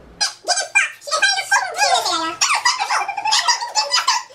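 Women squealing and shrieking with excited laughter, high-pitched and almost without a break.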